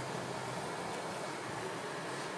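Steady road noise inside a moving car's cabin: an even hiss of engine and tyres on wet asphalt.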